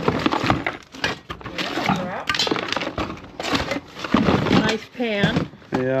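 Papers and small items being rummaged through in a cardboard box: a busy run of rustling, crinkling and light knocks, with a short voice sound about five seconds in.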